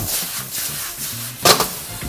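Beef and noodle stir-fry sizzling and steaming in a wok over charcoal, with one sharp knock about one and a half seconds in, under low background music.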